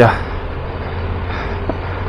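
Triumph Tiger 1200 Rally Pro's three-cylinder engine running steadily at riding speed on a gravel road, over a steady hiss of road and wind noise.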